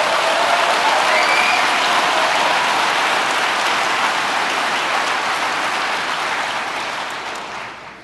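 A large audience applauding, loud and sustained, with a cheer or two in the first couple of seconds; the applause dies away near the end.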